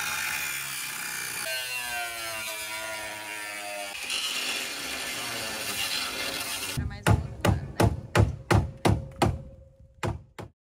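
Angle grinder cutting into the steel front frame of a car chassis, a steady grinding noise with a pitched whine through the middle. The grinding stops about seven seconds in, and a regular run of about eight sharp knocks follows, roughly three a second.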